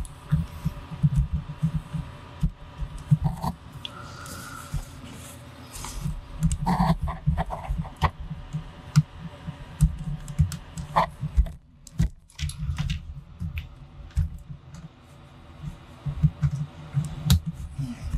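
Irregular knocks, taps and rubbing as a camera and its tripod are handled and repositioned close to the camera's microphone, with low thuds among sharper clicks.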